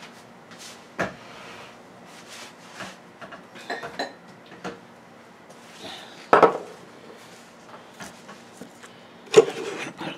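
Handling noises at a table: scattered knocks and clinks of objects being picked up and set down, with light rubbing between them. The loudest knocks come about six and a half seconds in and near the end.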